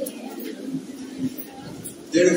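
A pigeon cooing softly, a low drawn-out call, under the room's faint background noise.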